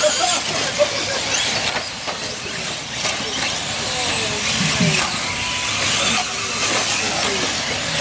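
Electric 4WD short-course RC trucks racing on dirt, their motors whining and rising and falling in pitch as they accelerate and brake, over a steady hiss of tyres and gravel.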